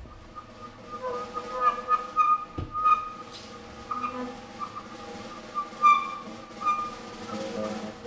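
Live jazz quartet in a quiet passage: a saxophone holds long, high notes over light drum and cymbal taps, with double bass and guitar underneath.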